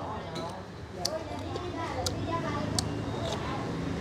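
Background chatter of restaurant diners with about four light clinks of a metal spoon against a ceramic bowl.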